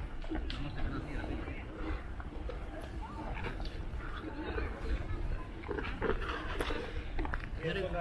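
Voices of people out on the frozen lake, talking and calling at a distance, with sharp clicks and scrapes from footsteps on the ice and a steady low rumble underneath.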